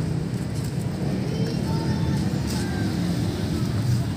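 Steady low background rumble with faint voices behind it.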